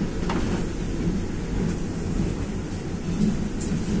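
Steady low running rumble of a moving electric commuter train, heard from inside the car, with a faint brief high squeak about a third of a second in.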